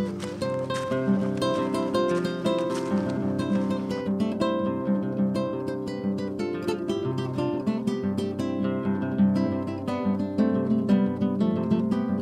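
Background music played on acoustic guitar, with a quick run of plucked notes and strums.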